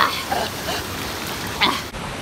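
Wind rushing over a phone's microphone as a steady noise, with a few short breaths from a winded hiker on a steep climb.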